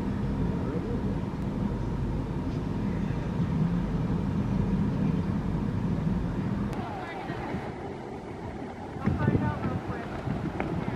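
Steady low background rumble that eases off about seven seconds in, with indistinct voices near the end.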